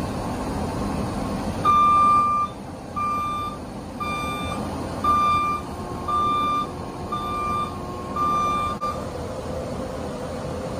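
John Deere 331G compact track loader's backup alarm beeping about once a second, seven beeps in all, over the loader's engine running steadily. The alarm signals that the machine is in reverse.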